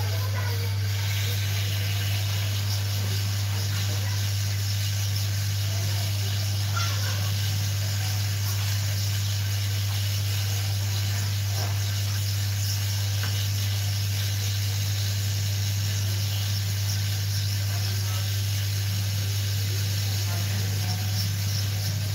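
Hot air rework station blowing steadily onto a phone circuit board: a constant airflow hiss over a strong, steady low hum.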